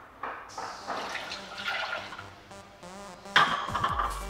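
Almond milk being poured from a carton into a plastic food processor bowl that already holds water: a steady splashing pour that foams up the liquid, briefly louder near the end.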